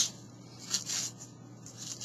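Kitchen knife slicing through a bunch of wheatgrass on a cutting board: a short crisp cut about three-quarters of a second in, and a softer one near the end.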